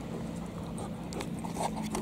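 Motorboat engine towing a water-skier, heard across the water as a steady low drone, with a few faint clicks in the second half.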